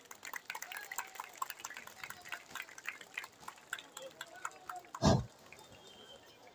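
Faint, scattered audience clapping and crowd noise after the music stops, with one louder thump about five seconds in.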